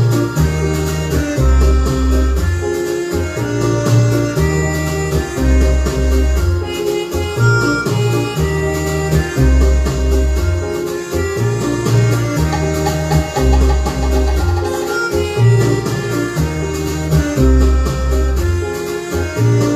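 Instrumental backing track playing, with a bass line repeating in a steady rhythm; no voice over it.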